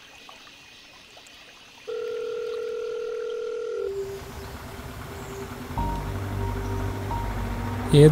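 A steady telephone call tone from a smartphone sounds once, starting about two seconds in, holding for about two seconds and cutting off suddenly. Soft background music follows, with a low bass coming in past the middle.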